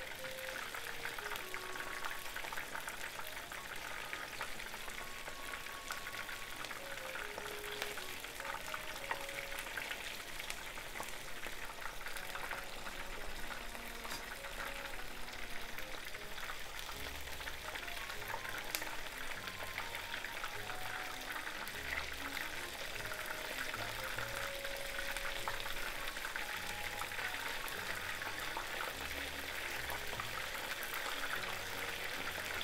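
Battered, shiso-wrapped chicken pieces deep-frying in about an inch of vegetable oil in a frying pan: a steady, dense sizzle of bubbling oil around the tempura as it cooks through.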